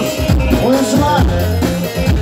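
Loud Turkish folk dance music for a halay line dance: a davul bass drum beats steadily under a wavering, ornamented melody.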